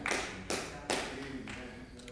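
Three soft, sharp taps about half a second apart in the first second, each with a short ringing fade.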